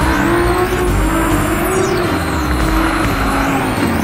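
Lamborghini Huracán's V10 engine accelerating hard, its note rising in pitch and dropping back about four times.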